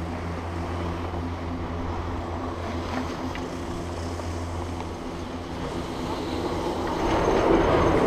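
Chairlift terminal machinery running: a steady low mechanical hum from the bullwheel and drive as the fixed-grip chairs go round. A louder rush of noise swells near the end.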